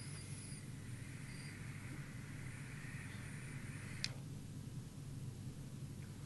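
Faint airy hiss of a long draw through a Quasar rebuildable dripping atomizer, with a thin high whistle near the start from its loose-fitting drip tip. The draw stops with a click about four seconds in.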